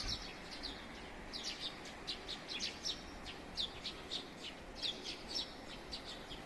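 Small birds chirping: many short, high chirps, some in quick runs of two or three, scattered irregularly over a faint steady background hum.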